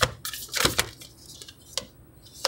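A deck of tarot cards being handled: a few crisp card clicks and flicks, the loudest cluster about half a second in, another single click near the end.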